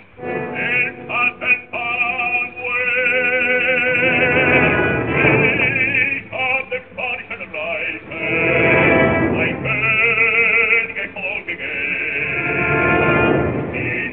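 Opera singing with orchestra: a voice with wide vibrato holds long notes between short breaks in the phrases. The sound is that of an early-1930s live recording, dull with no treble.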